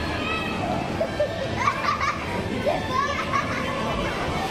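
Children playing, with high voices calling out over a steady background of chatter.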